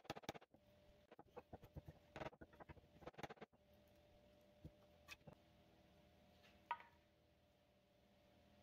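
Faint light taps and knocks of wooden pieces handled on a wooden workbench: a quick run of clicks and knocks in the first few seconds, then a few scattered ticks, one sharper click near the end.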